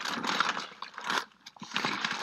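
Rustling and crinkling handling noise as someone rummages through things by hand: uneven scuffs and small ticks that die away for a moment past the middle, then pick up again.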